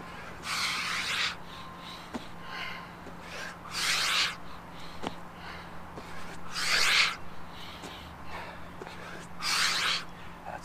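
A man breathing hard through a set of burpees: four forceful exhalations about three seconds apart, one per rep, with softer breaths and a few faint taps between them.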